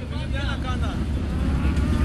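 Big-block V8 of a lifted 4x4 running at low revs with a deep, steady rumble that grows a little louder toward the end.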